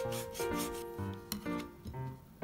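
Kitchen knife slicing a dried moray eel fillet into strips on a cutting board: a series of short rasping cutting strokes. Background music with held tones runs underneath.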